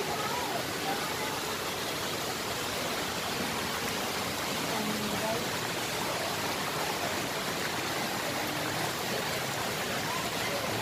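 Large outdoor fountain's many water jets splashing into the basin: a steady, even rushing of falling water, with faint voices of people nearby.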